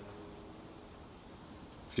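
Quiet room tone with no distinct sound: a faint, even background between phrases of speech.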